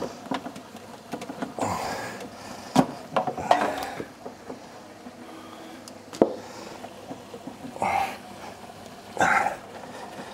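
Handling noises of a 16 mm hose being fed and routed inside an aquarium cabinet: scattered rustles and a few sharp clicks and knocks, three of them standing out.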